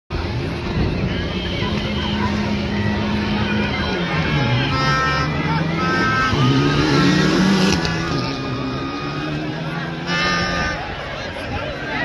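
A rally car's engine revving up and down, its pitch dropping about four seconds in and climbing again a couple of seconds later. Over it, a dense crowd of spectators shouts and calls out.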